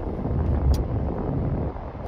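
Low, uneven background rumble on the microphone in a pause between words, with one faint click about three quarters of a second in.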